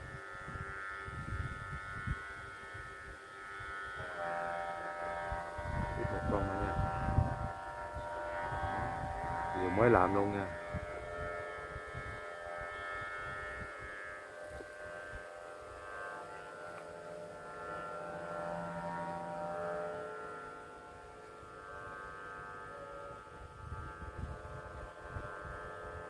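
Several steady humming tones at different pitches, held together without a break and sounding like a chord, with a voice breaking in briefly twice.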